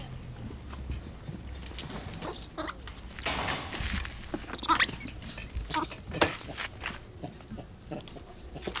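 Young vervet monkeys squealing: short, high-pitched cries that rise sharply in pitch, a faint one about three seconds in and a loud one near five seconds.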